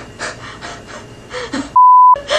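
Soft, breathy, gasping laughter in quick repeated bursts for about a second and a half, then a loud steady censor bleep tone starts near the end.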